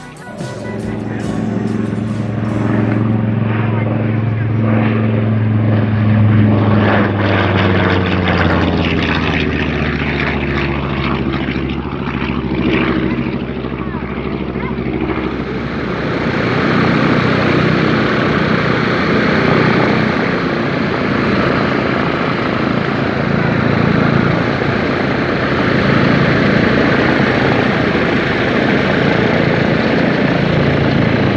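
Boeing B-17G Flying Fortress's four Wright R-1820 Cyclone nine-cylinder radial engines running on the ground with propellers turning. For the first half there is a steady drone that slowly drops in pitch. About halfway through it turns into a rougher, noisier drone as the bomber taxis.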